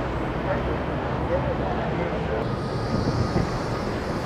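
City street noise: a steady rumble of traffic with faint voices of passers-by. A higher hiss joins about halfway through.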